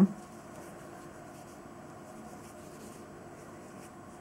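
Faint, steady rustle of thread drawn over a metal crochet hook as hands work a puff stitch.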